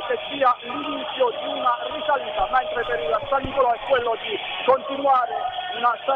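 A man speaking Italian without a break, heard over a remote link.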